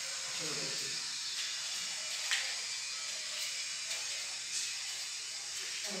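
A steady, high hiss, with one short sharp click a little after two seconds in.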